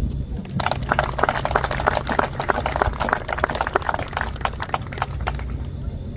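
Audience applauding for about five seconds, starting just over half a second in, over a steady low rumble.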